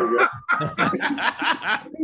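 Men chuckling and laughing in short, broken bursts, heard over a video call.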